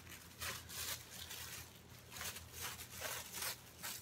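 Dull scissors cutting through a thin plastic grocery bag: a run of short, rasping snips mixed with the crinkle of the plastic.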